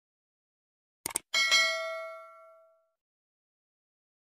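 Subscribe-button animation sound effect: a quick double click, then a bright bell ding that rings out and fades over about a second and a half.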